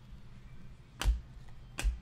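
Two sharp card snaps less than a second apart as Panini Prizm basketball cards are flipped through by hand, each card slapping against the stack.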